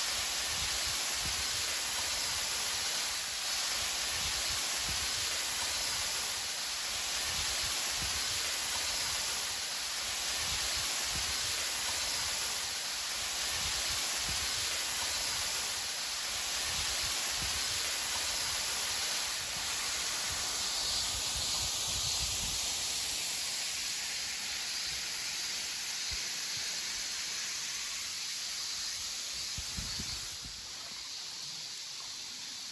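Small waterfall, a thin veil of water falling down a rock face into a pool, making a steady hiss.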